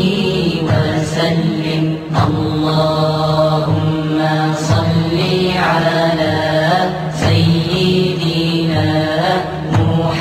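Devotional Islamic chant in Arabic: a voice singing long held notes that bend and waver in ornamented runs, over a steady low drone.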